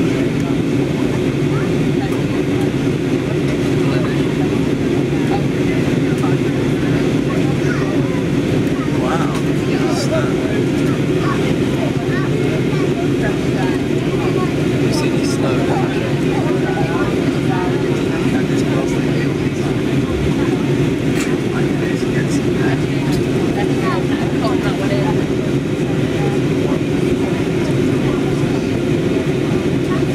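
Steady cabin noise of an Airbus A320-family jet airliner on its approach, the engines and rushing air heard from a window seat as a constant deep rumble. Indistinct passenger voices murmur faintly over it.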